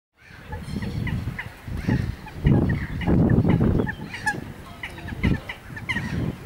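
Eurasian coot chicks giving short, high peeping calls over and over, with louder, rough low-pitched bursts underneath, the loudest from about two and a half to four seconds in.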